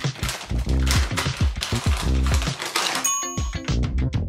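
Hip-hop-style background music with a deep, booming bass beat and a busy high rattling layer. About three seconds in, a short bright ding rings over it.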